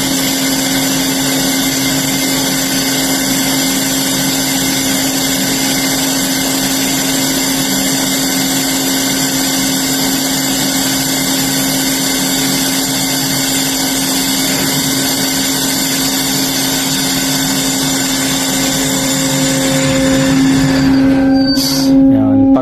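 Ship's hatch-cover hydraulic machinery running steadily, a loud mechanical hum with a constant low tone, as the hatch cover settles onto its landing pad. The sound shifts and grows a little louder near the end.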